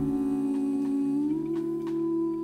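Live jazz vocal with big band: a woman's voice holding one long wordless 'ooh', sliding up in pitch a little past halfway, over sustained low band chords.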